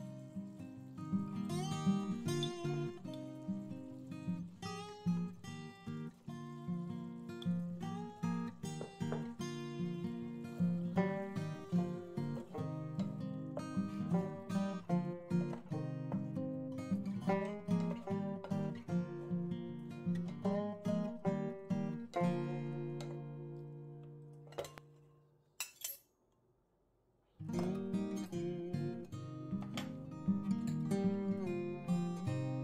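Background acoustic guitar music: plucked notes and chords at a steady pace. About 22 seconds in, a held chord fades away into a brief silence broken by a single click, and the guitar starts again shortly before the end.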